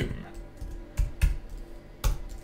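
Typing on a computer keyboard: a few separate keystrokes.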